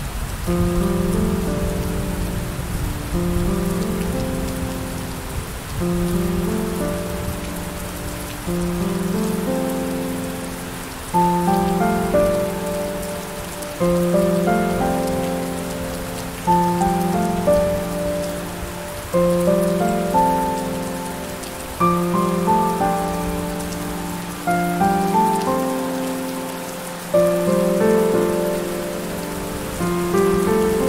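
Steady rain hiss with slow, soft piano chords over it. A new chord strikes about every three seconds and fades away.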